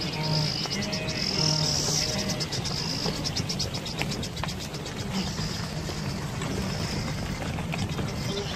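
Insects chirring in a high, rapidly pulsing trill, over soft background music.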